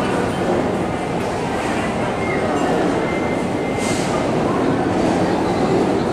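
Steady rumbling noise with indistinct voices in the background.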